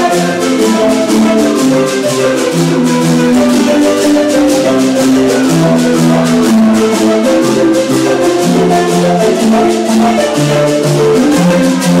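Marimba ensemble playing live: bass and higher marimbas interlock in a fast, repeating pattern of struck notes.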